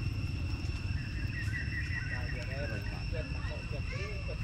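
A steady, high, even drone typical of insects, over a low rumble, with short chirping calls that start about a second in.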